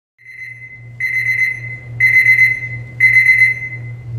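Electronic alarm-style beeping: a high beep about once a second, the first one faint and the next three loud, over a steady low hum.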